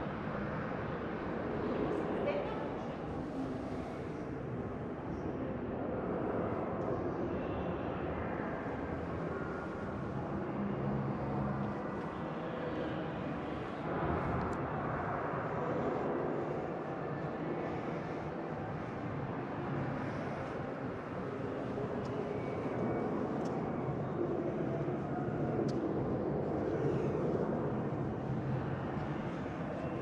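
Indistinct chatter of other visitors over the steady background hum of a large exhibition hall.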